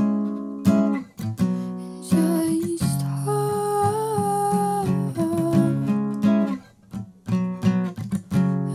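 Acoustic guitar strumming chords, with a woman's voice holding one long, slightly wavering sung note in the middle.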